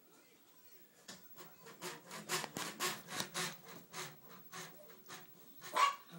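Stifled, breathy laughter: a run of short puffed exhalations, quick and strongest in the middle, then slowing, ending in one louder half-voiced laugh.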